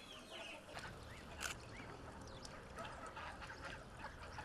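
Faint, scattered calls from a poultry flock of chickens and geese, with a sharp click about a second and a half in.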